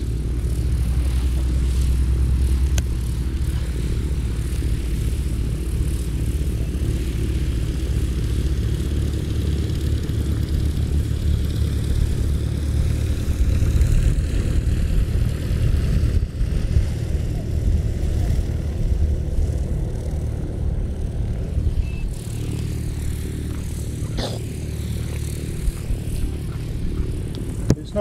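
Light propeller aircraft's piston engine running steadily, a low drone without a break.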